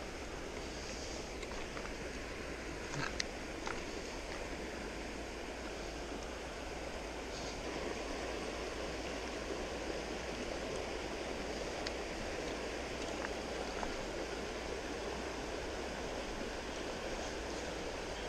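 Steady rush of a flowing stream, with a couple of faint brief clicks about three seconds in.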